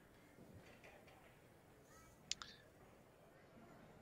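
Near silence around a pool table, broken about halfway through by two sharp clicks in quick succession.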